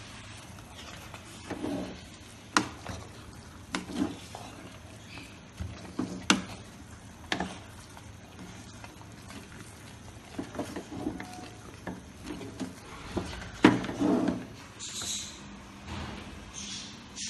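Metal ladle stirring thick rice in an aluminium pressure-cooker pot, scraping through the rice and clinking sharply against the pot's side and rim every second or few, with the loudest knock near the end.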